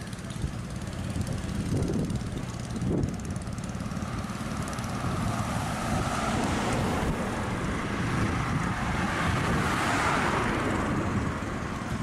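Road traffic: cars passing close by, the engine and tyre noise swelling from about halfway through to a peak near the tenth second, then fading.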